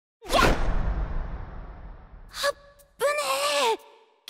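A sudden whoosh-and-hit sound effect with a deep rumble that fades over about two seconds, then a short breath and a brief high voiced exclamation from a character near the end.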